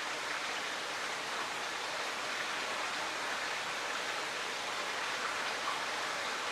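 Steady rush of splashing water from a koi pond's filtration system, running again after being shut down.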